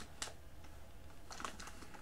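Faint clicks and light rustles of a pocket knife and paper packaging being handled: one sharp click just after the start, then a few more clicks in quick succession past the middle, over a low steady hum.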